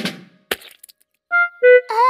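A cartoon splash effect: one sharp crack about half a second in. Then, after a pause, two short horn-like notes of a comic music sting marking a disappointingly small splash.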